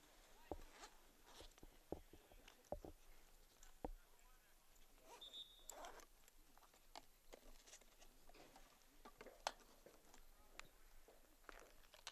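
Near silence: faint outdoor ambience with a few soft knocks in the first four seconds and scattered faint clicks.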